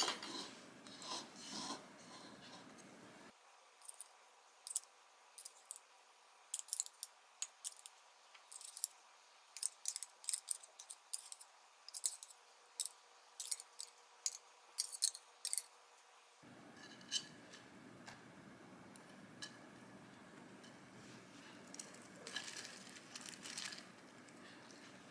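Light kitchen handling: a run of short, sharp clicks and scrapes from a utensil against an opened tin of spicy canned tuna and a wooden bowl as the tuna is put onto rice, thinning out after the middle, with soft handling of leaves near the end.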